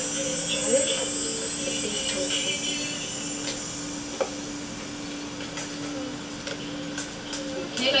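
A steady low hum, with faint, indistinct voices in the first few seconds and a single click about four seconds in.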